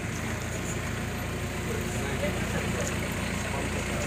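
Indistinct talk from a crowd of onlookers over steady street noise.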